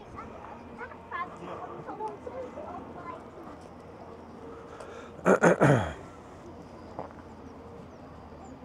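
A dog barking three times in quick succession, loud and falling in pitch, about five seconds in, over passers-by talking.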